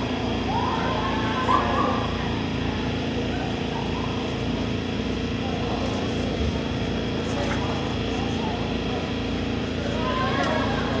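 City street ambience: a steady low mechanical hum with scattered voices, a few of them raised in the first two seconds.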